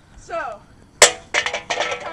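A short falling voice-like sound, then a single sharp bang about halfway through, followed by music and voices.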